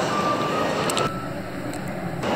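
Bustle inside a covered shopping arcade: a steady hubbub of shoppers and footsteps, with a held high beep-like tone in the first half. The sound drops abruptly and turns duller about a second in.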